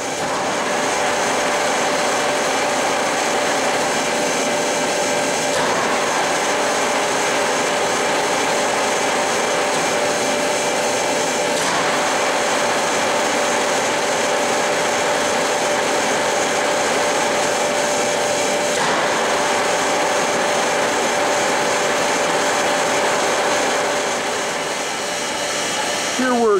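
Webster Bennett vertical turret lathe running under power: a steady mechanical whir with a constant hum tone, shifting slightly in tone a few times.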